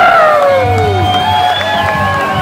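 Live rock band playing loudly, an electric guitar to the fore over bass and drums, with the crowd cheering. A loud note swoops up and then slides down in pitch over the first second.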